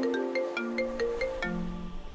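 Mobile phone ringtone playing: a marimba-like melody of quick, short notes, several a second.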